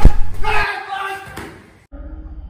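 A sharp smack at the start, followed by a man's shout or voice that fades away over about a second and a half and cuts off abruptly just before the end.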